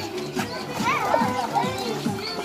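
Young children playing and calling out, over background music.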